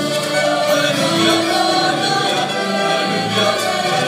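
A large choir singing, holding long sustained notes.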